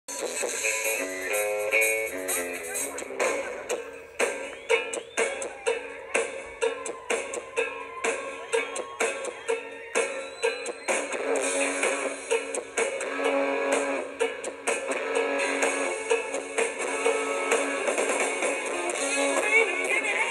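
Live rock band playing: electric guitars over a steady drum beat of about two hits a second. The sound is thin, with almost no bass.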